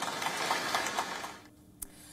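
Rapid, dense clicking of many press camera shutters over a hiss of outdoor ambience, fading out about a second and a half in.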